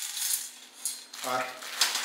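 Coiled braided-cable snare nooses being set down into a stainless steel bowl, clinking and rattling against the metal in a few short clatters.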